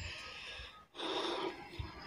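A man's faint breath, a short noisy inhale about a second in, in a pause between spoken phrases.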